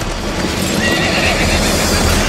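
A horse whinnying about a second in, over a steady low rumble of hooves.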